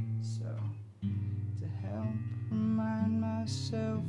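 Acoustic guitar being strummed and picked in an instrumental break of a slow song, sustained chords ringing; the playing drops away briefly about a second in, then comes back in steadily.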